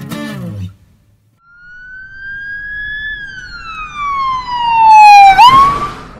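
A siren sound effect: one wailing tone that rises slowly, falls for about two seconds, then swoops sharply back up. It gets loud near the end.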